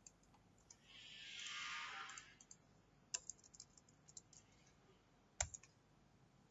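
Faint computer keyboard key clicks in a quick cluster, then a single louder mouse click near the end. A soft hiss swells and fades during the first couple of seconds.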